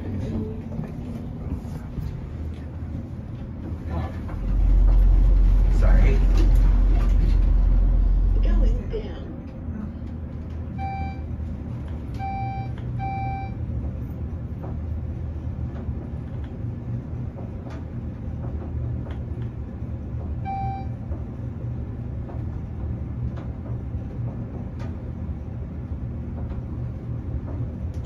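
Schindler-modernized Armor AC gearless traction elevator car travelling down at speed, with a steady low hum from the car in motion. From about four to nine seconds in there is a loud low rumble. Three short electronic beeps come about a second apart near the middle, and one more follows later.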